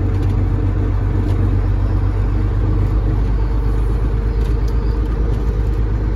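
Caterpillar 3406E inline-six diesel of a Freightliner FLD120 running steadily with a low, even hum, heard from inside the cab as the truck rolls slowly.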